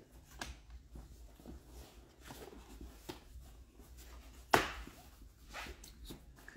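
A changing table being clipped onto the top rail of a play yard: scattered light knocks and rubs of plastic and padded fabric on the frame, with one sharp, louder click about three-quarters of the way through.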